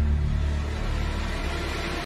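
Deep, steady rumbling drone from a dark trailer score, with a hiss swelling in the upper range toward the end.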